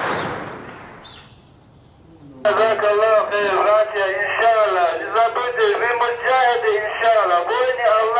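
A single heavy blast of weapon fire right at the start, its echo fading off between the buildings over about two seconds. A man speaks from about two and a half seconds in.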